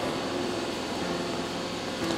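Steady, even hiss of room tone in a hall during a pause in speech, with no distinct event.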